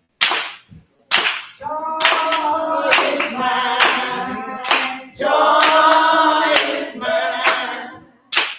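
Church praise team of women singing a gospel song together, with hand claps on the beat. The voices come in about one and a half seconds in, hold long notes, break off briefly near the middle and come back in.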